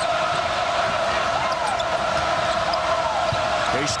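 Steady crowd noise of a packed basketball arena during live play, with the sounds of play on the hardwood court: the ball bouncing and a couple of short shoe squeaks.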